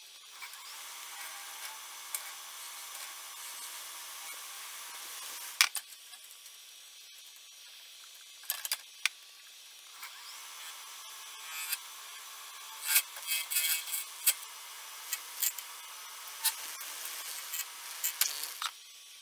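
A spinning epoxy resin blank being cut on a wood lathe with a hand-held turning tool: a steady scraping hiss of the tool peeling ribbons of resin, starting about half a second in. Sharp ticks sound now and then, coming thickly over the last six seconds.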